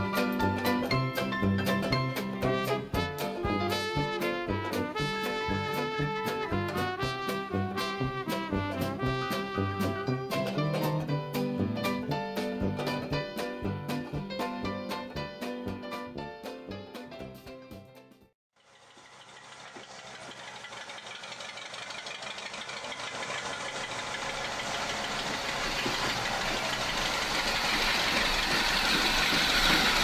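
Plucked-string background music that fades out about eighteen seconds in. After a brief silence, the rushing noise of an approaching train rises and grows steadily louder.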